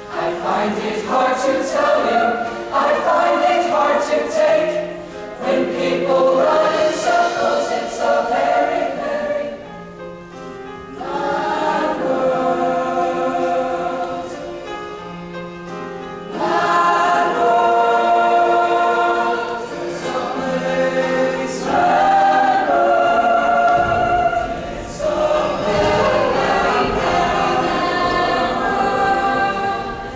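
Show choir singing together in harmony, in sung phrases with brief quieter dips about ten and fifteen seconds in.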